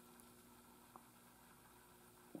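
Near silence: room tone with a faint steady hum and one faint tick about halfway through.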